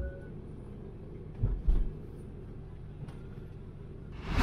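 A car driving, its engine and tyre rumble heard from inside the cabin, with a couple of dull thumps about a second and a half in.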